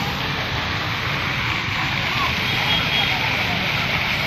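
Steady rushing and splashing of a large fountain's water jets, with faint voices in the background.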